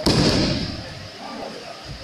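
A person thrown onto a tatami mat lands in a breakfall: one sudden heavy thud right at the start, fading within about half a second as it echoes in the hall.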